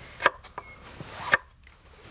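Large kitchen knife chopping through a raw sweet potato onto a wooden board: two sharp chops about a second apart.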